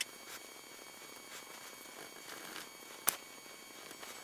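Dry-erase marker drawing on a whiteboard: faint scratchy strokes of the felt tip across the board, with one sharp click about three seconds in.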